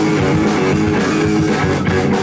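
A rock trio playing live through amplifiers: electric guitar, bass guitar and drum kit in an instrumental passage, with no vocals.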